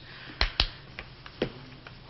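A few short, sharp clicks or knocks: two close together about half a second in, and one more about a second and a half in.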